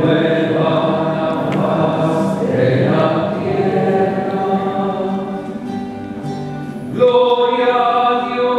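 A choir singing a slow Spanish-language hymn in several voices with long held notes. About seven seconds in, a louder, higher phrase begins.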